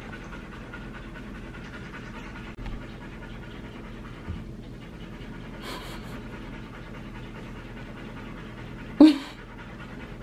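Dogs panting steadily with their tongues out, tired and hot after a long walk and play at the dog park. A brief louder sound comes about nine seconds in.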